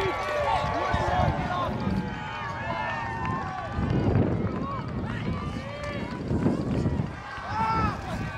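Several voices shouting and calling out over one another, with irregular low rumbles underneath.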